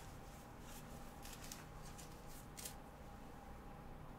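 Faint handling of a stack of trading cards: a few short papery scrapes and rustles as the cards slide, over a faint steady hum.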